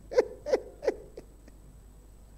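A man laughing into a microphone: four short 'ha's, each falling in pitch, about three a second and dying away after a second or so.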